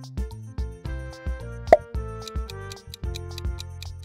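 Background music with steady held notes and a regular beat, with one short pop sound effect a little under halfway through, the loudest moment.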